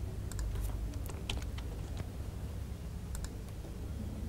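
Scattered clicks of a computer mouse and keyboard while a web form is filled in: a quick run of clicks in the first two seconds, then a pair just after the third second, over a steady low hum.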